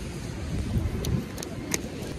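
Low, steady rumble of city street traffic, with a couple of faint sharp clicks in the second half.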